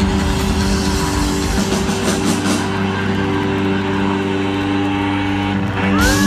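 Live rock band through a festival PA, heard from the crowd: a held, droning chord that stays on the same notes without a break, over crowd noise.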